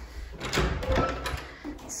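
An old wooden panel closet door being opened, with a cluster of latch and handling clicks and rattles starting about half a second in.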